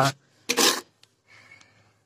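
A short rasping rub about half a second in, then a fainter, longer scraping rub in the second half.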